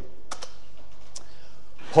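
A few faint clicks like computer keys being pressed: a quick pair about a third of a second in, then one more just past a second, over steady room noise.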